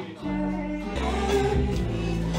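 Live band music with singing: held chords and sung notes over bass and drums, the bass swelling about a second in.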